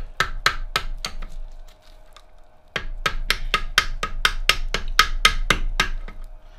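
Hammer blows driving a shaft out of a stripped Reliant 750cc engine block: a quick run of sharp taps, a pause of about a second, then a longer, steady run of about four taps a second.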